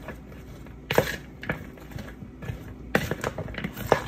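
Metal spoon stirring mayonnaise and cucumbers in a mixing bowl: soft wet mixing with irregular knocks and scrapes against the bowl, the sharpest about a second in, about three seconds in and near the end.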